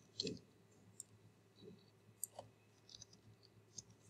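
Near silence with a few faint, scattered clicks from a computer mouse and keyboard used to edit an equation.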